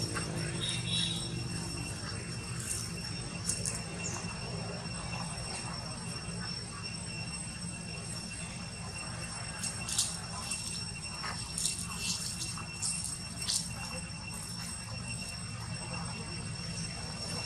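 Outdoor background of a steady low hum and thin steady high tones, with scattered short crackles of dry leaf litter under walking macaques' feet, a few about three seconds in and a cluster between ten and fourteen seconds in.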